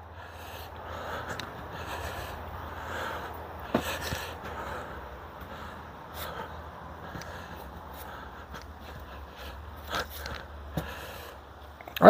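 A person walking about with a wooden walking stick on a dirt and sawdust floor: quiet shuffling steps and a few sharp knocks from the stick, over a steady low hum.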